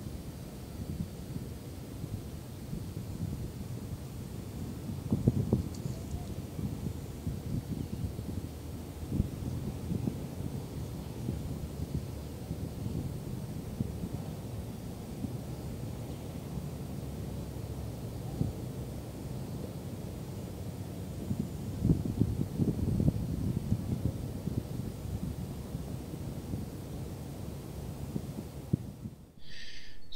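Wind on the camera microphone: a low rumble that swells in stronger gusts about five seconds in and again around twenty-two seconds.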